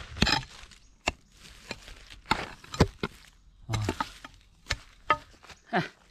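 An axe striking in short, sharp chops, about ten irregular strikes in six seconds.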